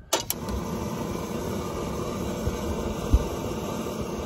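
Gas canister camp stove: a sharp click right at the start, then the burner running with a steady rushing hiss. A single knock about three seconds in, as the pan goes onto the stove.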